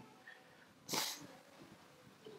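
A single short, breathy hiss of a person's breath about a second in, such as a sniff; otherwise quiet room tone.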